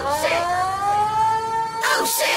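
One long, held pitched tone with several overtones. It glides up slightly at the start and then holds steady.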